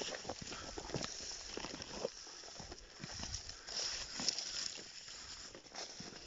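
Irregular crunching and rustling of footsteps in shallow snow, with scattered short clicks over a faint hiss.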